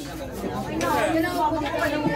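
People chatting in the background, several voices talking casually.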